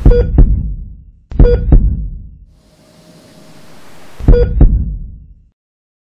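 Heartbeat sound effect: three loud double thumps (lub-dub), each followed by a low boom dying away. A whooshing swell rises into the third beat.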